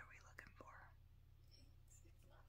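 Very faint whispering in the first second, with a couple of light clicks, over a low steady hum; otherwise near silence.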